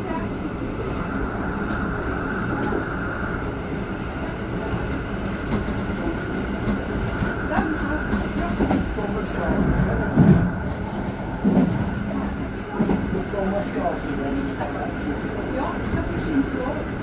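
Rhaetian Railway regional train running along the track, a steady rolling noise with a constant whine and scattered clicks from the wheels on the rails.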